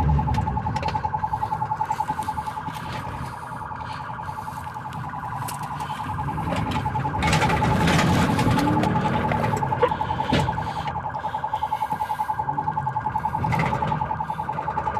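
Police cruiser's siren heard from inside the cabin: one steady high tone pulsing rapidly, several times a second, over the low rumble of the car's engine and tyres.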